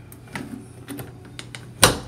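A few light clicks and knocks of a front door's knob and latch being handled, then a sharp, loud latch click near the end.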